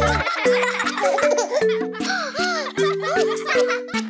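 Instrumental children's song music with cartoon children giggling and laughing over it in short repeated bursts.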